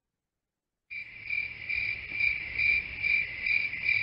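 Crickets chirping in a steady night chorus, pulsing about twice a second, coming in about a second in after a moment of silence.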